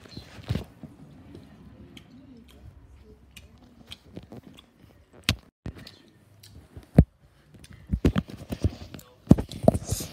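Close-up chewing sounds right by the microphone: irregular sharp clicks and knocks, growing denser near the end.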